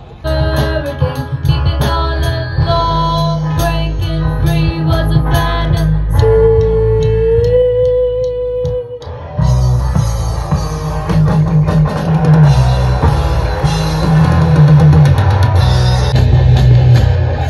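A live rock band playing an amplified song with electric guitars, a drum kit and singing. About six seconds in the band thins to a single held note, then the full band comes back in, louder.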